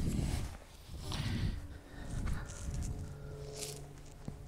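Footsteps of a person walking over rough ground, with wind rumbling on the microphone. A faint steady hum comes in about three seconds in.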